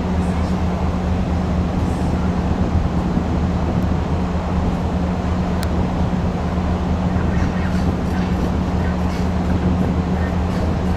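Cruise ship machinery running with a steady low hum that holds the same pitch throughout.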